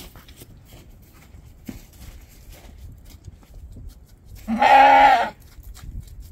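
A black-faced lamb bleats once, a single loud call of under a second about three-quarters of the way in.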